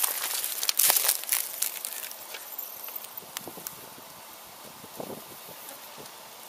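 Dry leaf litter crackling and rustling as a king brown snake crawls through it, loudest in the first second or two, then fading to a faint hiss.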